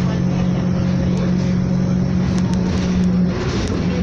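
Diesel engine drone and road noise of a bus under way, heard from inside the passenger saloon near the front: a steady low hum whose note dips a little past three seconds in.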